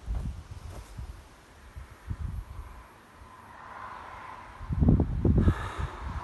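Wind buffeting a phone microphone outdoors: irregular low rumbling gusts, quieter in the middle and strongest about five seconds in.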